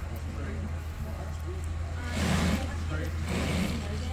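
Chevrolet Blazer SUV engine idling, a steady low hum, with two short noisy rushes about two and three seconds in.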